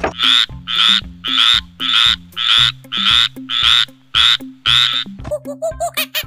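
A frog croaking in a steady series of about ten short calls, roughly two a second, which stops about five seconds in.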